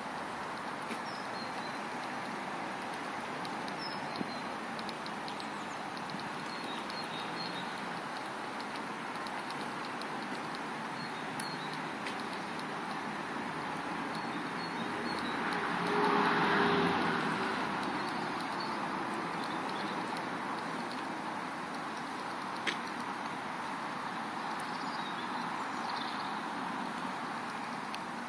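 Outdoor morning ambience: a steady background hiss of distant road traffic, with a vehicle passing that swells louder about halfway through and fades. A few faint bird chirps come and go.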